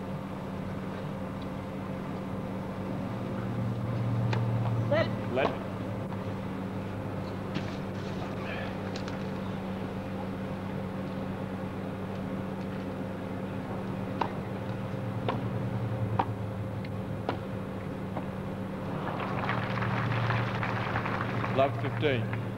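A tennis rally: isolated sharp knocks of rackets striking the ball over a steady hum, with a brief voice call. Crowd applause breaks out for a couple of seconds near the end.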